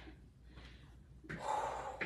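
A woman's breathy "woo" exhale, winded from a hard leg workout, starting about a second and a half in.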